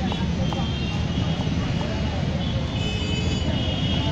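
Steady low rumble of city street traffic, with a few faint knife taps as a tomato is sliced on a wooden chopping board.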